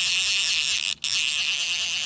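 Fly reel's click-and-pawl ratchet buzzing steadily as line runs through it during the fight with a hooked bluegill, with a brief break about a second in.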